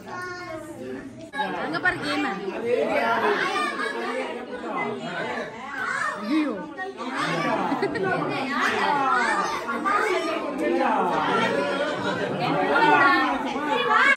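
Chatter of a group of adults and children talking over one another.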